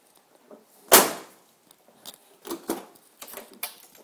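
Car door and interior trim being handled: one sharp clunk about a second in, then several lighter clicks and taps.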